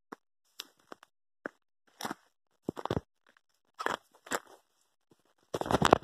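Footsteps crunching through dry brush and grass, with twigs brushing past, in short irregular bursts that are loudest near the end.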